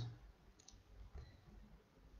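Near silence with a few faint clicks, a quick pair about half a second in and another a little after a second.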